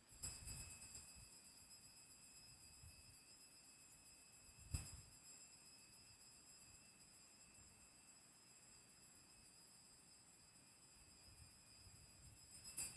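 Near silence: faint room tone with a few steady, faint high-pitched tones, and one brief soft knock a little under five seconds in.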